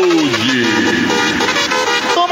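Live DJ mix of electronic dance music at a transition: a falling pitch-sweep effect ends about half a second in, followed by a noisy wash with the bass and beat dropped out.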